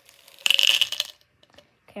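Small candy-coated chocolates (M&M's Minis) rattling and tumbling in their plastic tube as it is tipped. There is one loud burst of about half a second, starting about half a second in, with faint clicks around it.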